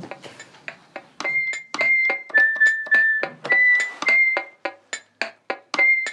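Small electronic toy keyboard playing a simple melody of short, high notes, each with a click at its onset. The notes get shorter and quicker near the end.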